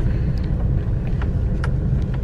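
Steady low rumble of a car's engine and tyres heard from inside the cabin as it drives slowly, with a few faint ticks.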